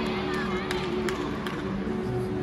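Gymnastics arena ambience: music playing through the large hall, with crowd murmur and voices, and a few short, sharp knocks.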